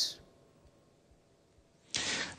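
A pause between speakers. A woman's voice trails off in the first moment, then there is near silence for well over a second, then a short hiss near the end just before a man's voice starts.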